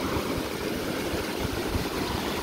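Shallow mountain stream rushing over rocks, a steady loud hiss of running water, with wind rumbling irregularly on the microphone.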